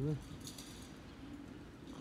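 The last syllable of a man's voice, then low, steady background noise with a few faint, short high-pitched ticks about half a second in.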